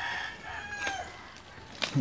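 A rooster crowing: one long held call that falls off and ends about a second in.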